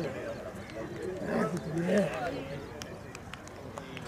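Men's voices talking and calling across the field, loudest in the first half, fading to a low murmur of background chatter.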